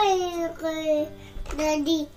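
A young child singing in three drawn-out notes, the first sliding down in pitch, over faint background music.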